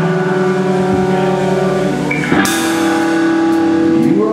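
Live rock band playing sustained electric guitar and bass chords, with a crash cymbal hit just past halfway as the drums come in.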